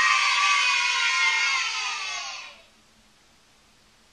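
Digital piano's final high notes ringing on after the closing chord of the song, slowly dying away and gone about two and a half seconds in.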